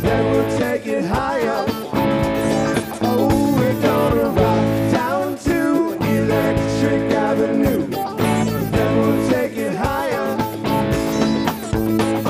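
Rock band playing live: an electric guitar carries the lead, its notes bending and wavering in pitch, over steady drums and bass.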